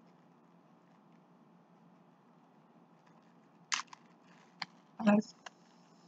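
Quiet room hum, then two short clicks a little under a second apart, late on, from a small object being handled.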